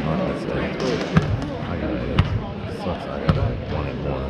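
A basketball bouncing on a hardwood gym floor, three bounces about a second apart, over voices echoing in the gym.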